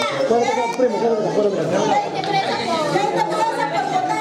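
Several people talking at once, overlapping voices of a group gathered in a room.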